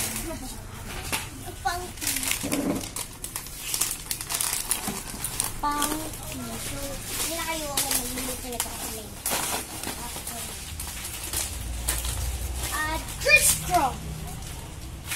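Plastic snack packets crinkling as they are picked up and handled, with a young girl's voice alongside.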